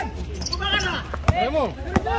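A basketball bouncing on an outdoor hard court, with two sharp bounces in the second half, over players' voices calling out.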